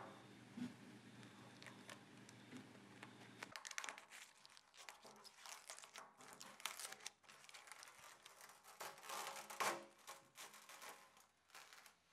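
Faint crinkling and tearing of a heat-softened sticker being peeled by hand off the painted sheet-metal top of a petrol pump, in short uneven crackles that come thickest from about four to ten seconds in.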